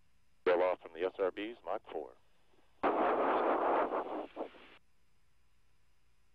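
A short spoken call over the crew's radio loop, then about two seconds of static-filled radio transmission that switches on and off abruptly, like a keyed radio channel.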